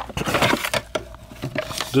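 Plastic vacuum cleaner attachments being handled and knocked against each other, a quick run of light clicks, taps and rattles.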